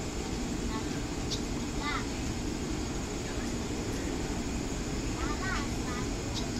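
Steady low hum of a stopped 205-series electric commuter train standing at a signal, with short high chirps twice, about two seconds in and near the end.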